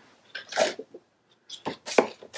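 Paper handling: rustling and sliding of sheets on a cutting mat, with a short quiet gap and then a sharp click near the end.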